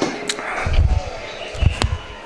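A few dull, deep thumps in two bursts, about half a second in and again near the end, with a couple of sharp clicks.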